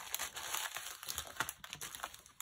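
Small clear plastic bags of diamond-painting drills crinkling with an irregular crackle as they are handled and pressed flat.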